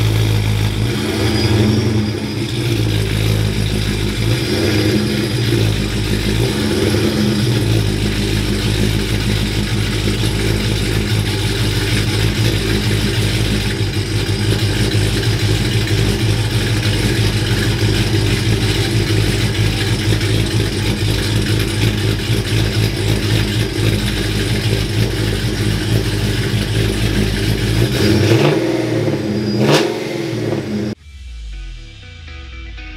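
Ram pickup truck's engine running at low speed while the truck is eased back into a portable carport, cutting off near the end.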